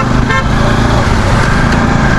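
Motorcycle engine running steadily under way, with road and wind noise, and one short horn toot just after the start.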